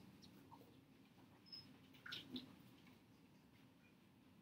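Near silence: room tone with a few faint, brief small sounds around the middle.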